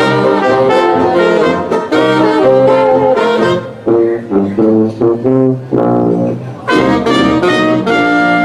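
Live traditional jazz band of cornet, saxophones and clarinet, piano, banjo and sousaphone playing late-1920s New Orleans dance-band repertoire. Full ensemble at first; from about four seconds in the band plays a few seconds of short, separated notes with gaps between them, then the whole band comes back in together near the end.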